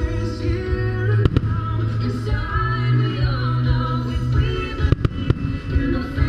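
Fireworks show soundtrack music with singing, over which firework bursts go off: one sharp bang about a second in and two close together near the end.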